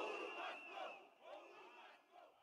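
A large crowd shouting together, many voices at once, faint and fading away near the end.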